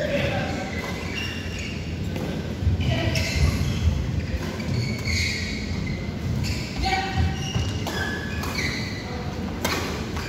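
Badminton rally in a large hall: rackets strike a shuttlecock with sharp cracks about once a second, among short high shoe squeaks and footfalls on the court mat.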